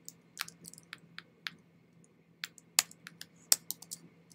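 Computer keyboard keystrokes and clicks, irregular and sharp, with a short pause about halfway through.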